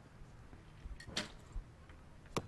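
Quiet background hum with a short, faint click about a second in.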